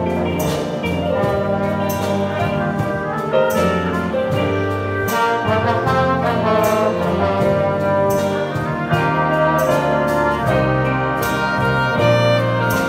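Jazz band playing, with trumpets, trombones and saxophones sounding together.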